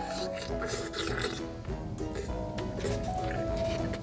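Background music with a steady beat and held melodic notes.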